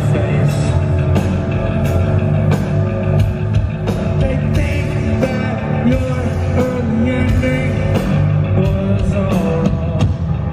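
Live rock band playing loud through a concert sound system: drums, bass and electric guitar, with a male singer's vocal over them.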